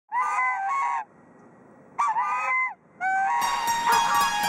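White Chinese geese honking in three bursts, the first two of a second or less each, the last one short. Music comes in just before the end.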